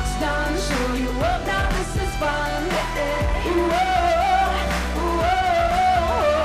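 Live pop song: a woman sings a melodic line over a steady bass and drum beat. About two-thirds of the way through she holds a long note with vibrato.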